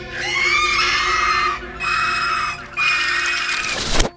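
Three long, high shrieks with wavering pitch over a low, sustained drone in a scary film score, ending in a sharp hit.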